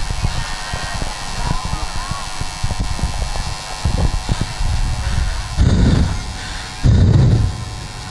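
Heavy breaths blown into a handheld microphone and carried over the PA, two loud gusts near the end, over a steady electrical hum from the sound system.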